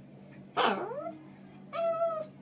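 Small dog whining twice: a short swooping whine about half a second in, then a longer, steadier whine near the end.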